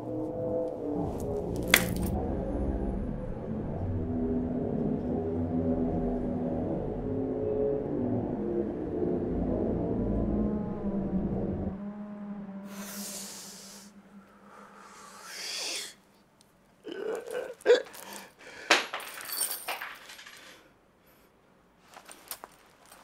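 Low, tense film music for about the first half, then a whoosh and a quick run of sharp metallic clinks as a one-pataca coin is flipped and lands.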